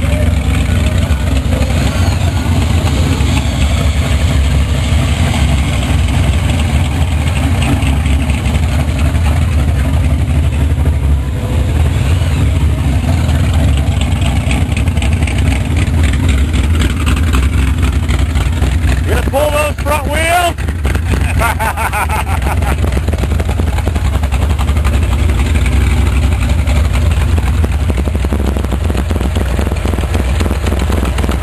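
Loud small-block Chevy V8 in a gasser-style Chevrolet hot rod running at low speed with a steady, heavy beat. A brief wavering high-pitched sound comes about twenty seconds in.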